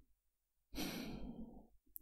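A man's sigh: one breathy exhale about a second long, starting just under a second in.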